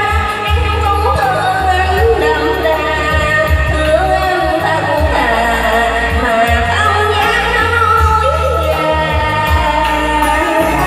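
A woman singing a Vietnamese song into a microphone over amplified backing music with a steady bass line.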